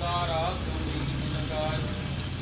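A man's voice chanting two short, bending phrases over a steady low hum.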